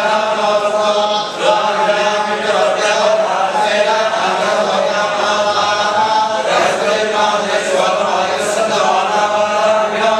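A group of men's voices chanting together in unison, a continuous devotional recitation in long, sustained notes with slowly shifting pitch.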